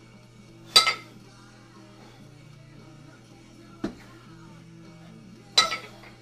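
Two 12 kg iron kettlebells clanking together as they drop from overhead into the chest rack during double jerks: a loud metallic clank with a short ring about a second in and again near the end, and a smaller knock about four seconds in. Quiet rock music plays in the background.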